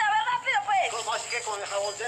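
Speech: a high-pitched voice talking without a break.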